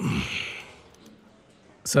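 A man's heavy sigh that starts suddenly and trails off over about a second.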